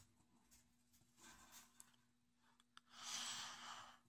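A pipe smoker breathing out: a few faint clicks and a soft breath, then a long exhale of pipe smoke starting near three seconds in, like a sigh.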